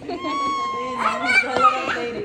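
A young child's high voice vocalising in one long drawn-out call, joined about halfway through by other overlapping voices.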